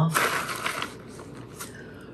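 Paper bag crinkling and rustling as granola is shaken out of it by hand, loudest in the first second, then fading to a faint rustle.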